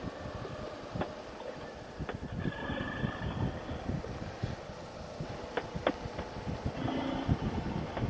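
Motorcycle at road speed on a bumpy paved road: the Suzuki V-Strom 650's V-twin engine and wind on the helmet microphone make a low, uneven rumble.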